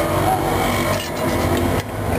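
Steady street traffic noise: a low rumble of idling and passing vehicle engines, with faint voices in the background.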